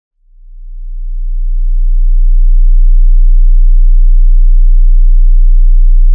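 A pure 30 Hz sine test tone, a very low steady bass hum, fading in over about two seconds and then holding loud and unchanging.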